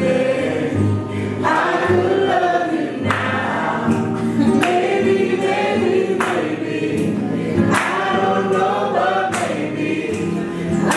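A woman singing a slow song, accompanying herself on acoustic guitar. From about three seconds in, strummed chords fall roughly every second and a half.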